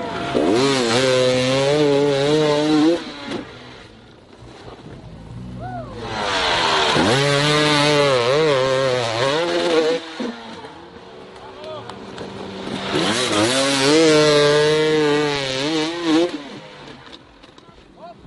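Dirt bike engines revving hard in three long bursts of a few seconds each, the pitch wavering up and down as the throttle is worked, with quieter running between. The bikes are struggling up a steep, loose sandy climb with the rear wheel spinning.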